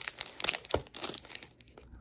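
Plastic wrappers of King Size Lucky Charms marshmallow treat bars crinkling as they are handled and turned over, in irregular rustles that thin out in the second half.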